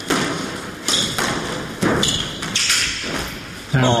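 Squash ball rally: a hard rubber squash ball struck by rackets and hitting the court walls, with sharp knocks about a second apart.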